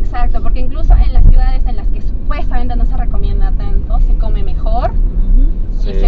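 People talking in Spanish inside a car's cabin, over the steady low rumble of the car on the move.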